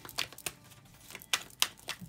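A deck of tarot cards shuffled by hand, giving a run of sharp, irregular card clicks and snaps.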